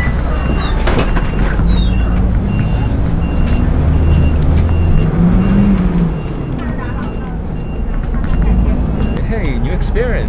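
Cabin noise of a moving city bus: a steady engine and road rumble that swells about halfway through, with the engine note rising and falling, under a faint high beep repeating evenly.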